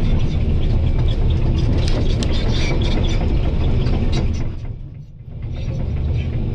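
Volvo EC220 DL excavator's diesel engine running under load, with a run of sharp clicks and cracks over the rumble. The sound fades almost out about five seconds in, then comes back.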